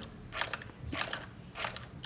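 Fingers tapping and rubbing on a tablet's touchscreen and rubber case: about four soft, short taps a little over half a second apart.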